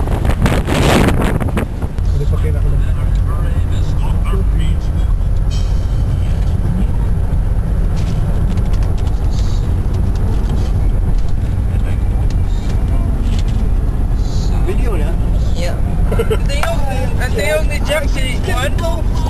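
Steady low rumble of a car on the move, heard from inside the cabin, with faint voices in the car. For about the first two seconds it is instead broad wind-like noise from outdoors.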